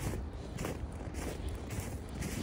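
Boot footsteps crunching in snow, about two steps a second, over a low steady rumble.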